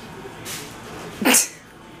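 A small white dog sneezes once, a short sharp burst a little over a second in.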